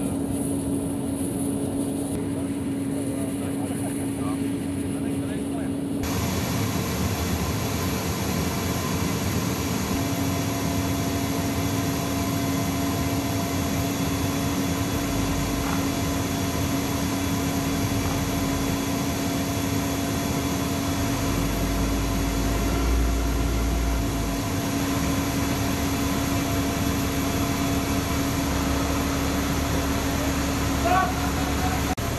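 A C-17 Globemaster III's jet engines running on the ground, heard from inside its open cargo hold as a steady rushing noise with a constant hum. For the first few seconds the sound is thinner, then it turns abruptly fuller and brighter about six seconds in.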